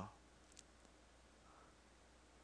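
Near silence with a faint low hum, and a single faint computer mouse click about half a second in.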